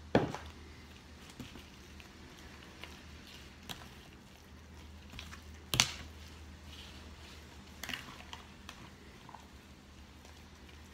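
Wet banana bread batter being stirred with a plastic spatula in a plastic mixing bowl: soft squishing and scraping, broken by a sharp knock right at the start and a louder one about six seconds in, with a few lighter clicks between.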